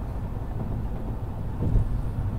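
Low, steady rumble of vehicle road noise, with a brief thump near the end.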